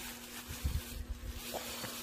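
Clear plastic bag crinkling as a wet seasoned side dish is emptied from it onto a wooden plate, with a few soft low bumps about half a second in. A steady low hum runs underneath.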